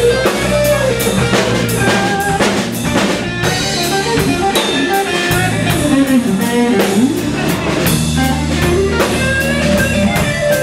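Live blues band playing: a Stratocaster-style electric guitar solos with bent notes over a drum kit and bass guitar.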